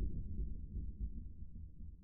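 Low, dark rumble of an ambient horror film score, fading away.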